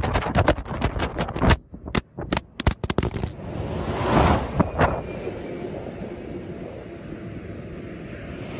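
Sound picked up by a phone lying on a freeway. For about three seconds there is a rapid, irregular run of sharp knocks and clatters, then steady traffic noise with vehicles rushing past about four and five seconds in.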